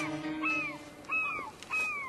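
Seagulls crying: about four short calls, each rising briefly and then falling in pitch, a bird sound effect in the cartoon's soundtrack.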